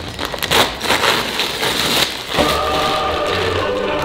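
Gift-wrapping paper crinkling and tearing as a large soft present is pulled open. A little past two seconds in, a steady held musical chord with a low hum sets in, as a reveal sting.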